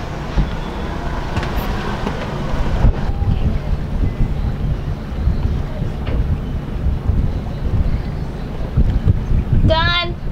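Wind buffeting the microphone, a loud gusty rumble. A short voice is heard just before the end.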